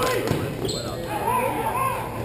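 Hockey players calling out on the court, with knocks of sticks and the ball on the hard floor, echoing in a large hall.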